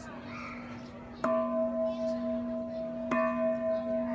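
Large hanging Burmese temple bell struck twice with a long striker pole, about a second in and again about three seconds in. Each strike sets off a long, steady ring over the hum still sounding from a strike just before.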